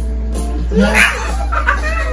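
Laughter and a sudden loud vocal cry about a second in, from the people reacting, over the episode's background music.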